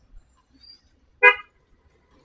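A vehicle horn gives one short beep about a second in.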